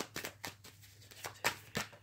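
A deck of tarot cards being handled and shuffled, giving a few scattered sharp flicks and snaps of the cards.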